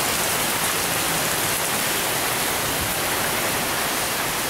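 Heavy rain pouring down, a steady dense hiss of a downpour.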